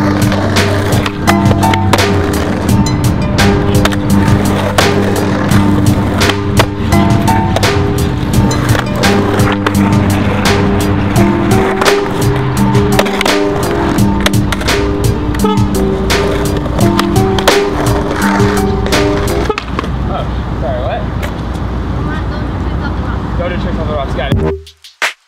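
Background music playing over a skateboard rolling and clacking on concrete, with sharp pops and landings scattered throughout. The music's melody drops out about three-quarters of the way in, leaving the rolling and clacks.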